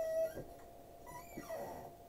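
The end of a man's drawn-out word, then a quiet room with faint handling sounds as a plastic action figure is picked up. A faint steady tone runs underneath.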